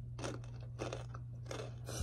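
Blue Heat Takis rolled tortilla chips being bitten and chewed, crisp crunches about twice a second, over a steady low hum.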